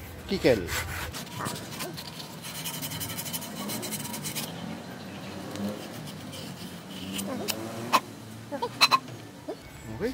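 Sandpaper rubbed back and forth by hand on the freshly cut end of an aluminium fork steerer tube, smoothing the cut: a quick run of scratchy strokes in the first half. A couple of sharp knocks follow near the end.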